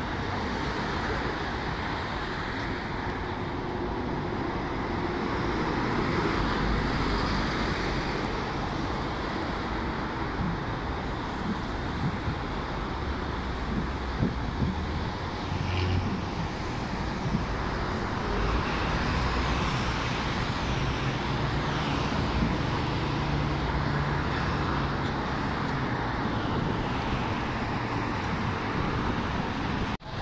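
Steady city road traffic noise, with the low rumble of passing vehicles swelling and fading several times.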